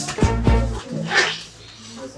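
Background music, with two sharp knocks early on and a short swishing burst about a second in, from a straw broom swung against concrete ground.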